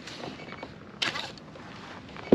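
Faint open-air noise of wind and water around a kayak, with a short rustling noise about a second in.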